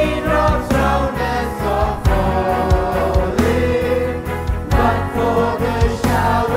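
Worship team of men's and women's voices singing a Christian praise song together, with long held notes over instrumental accompaniment.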